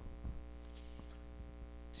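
Steady electrical mains hum, a low buzz with many even overtones, carried by the microphone and sound system.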